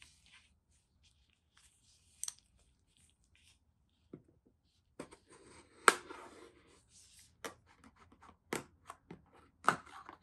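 Small knife blade cutting the seal on a cardboard phone box: faint rustling at first, then from about five seconds in, a run of sharp clicks and scraping as the blade works along the box edge.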